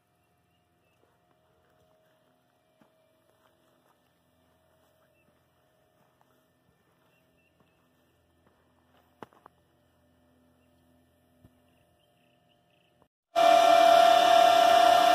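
Near silence with a few faint clicks about nine seconds in. Then, near the end, the loud steady whine and rush of an Antminer crypto miner's cooling fans starts suddenly.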